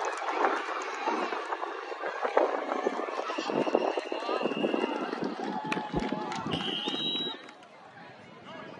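Overlapping shouts and chatter of players and sideline spectators at a youth flag football game, with a brief high steady tone shortly before the level drops near the end.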